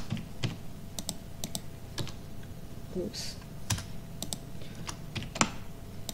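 Computer keyboard keys tapped in short, irregular runs as small numbers are typed into form fields, with a brief murmur of voice about three seconds in.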